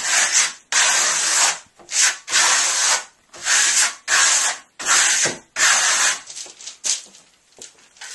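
A plastering trowel scraping sanded lime plaster (Marmorino KS) across a wall in long strokes. There are about seven separate scrapes, each half a second to a second long.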